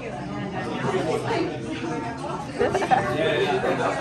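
Indistinct chatter and conversation of diners filling a busy restaurant dining room.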